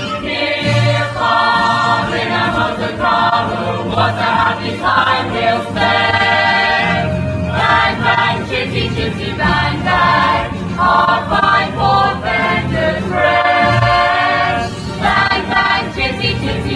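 Stage-musical chorus singing with orchestral backing, in sung phrases of a second or two, with longer held notes about six seconds in and again near the end.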